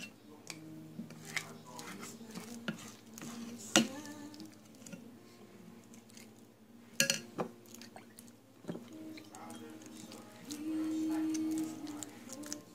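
Wet hands scooping and shaping raw ground-chicken sausage mixture in a glass bowl: soft squishing with sharp knocks against the glass, the loudest about four and seven seconds in. A steady low hum sounds for about a second near the end.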